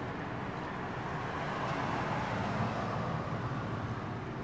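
Road traffic noise, with a vehicle passing that swells about two seconds in and then fades.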